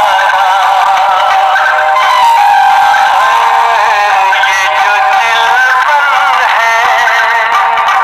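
A man singing a Hindi film song, the melody moving in long wavering notes with ornaments. The sound is thin, with almost no bass.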